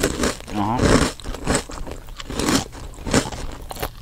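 A person chewing noisily, with a run of crunchy bites and a hummed 'mm' about a second in.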